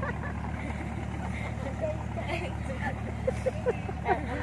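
A small motorboat's engine runs with a steady low hum, with faint voices in the distance.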